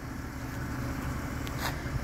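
BMW E92 330xi's straight-six engine idling, a steady low hum.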